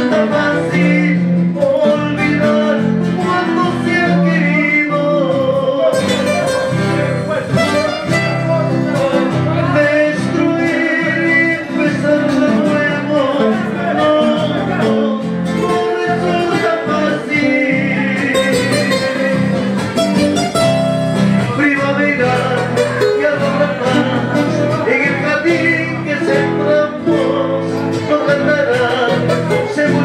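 Live music: two acoustic guitars accompanying a man singing into a microphone.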